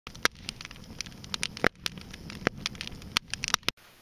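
An open fire crackling, with irregular sharp pops over the low rumble of the flames; the sound cuts off suddenly near the end.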